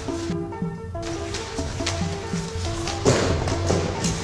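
Background music: a repeating pattern of short notes over a steady beat, with a loud crash-like hit about three seconds in.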